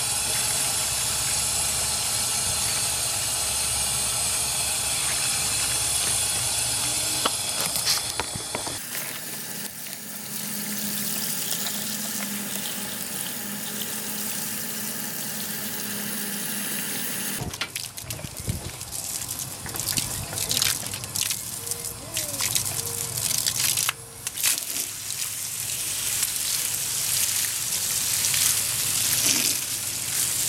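Water from a garden hose splashing and running over a package air conditioner's finned coil as cleaner is rinsed off, with abrupt cuts in the sound about nine and seventeen seconds in.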